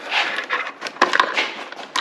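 Irregular rustling and light clicks of hands feeding a thin tachometer wire around the engine inside an outboard's cowling.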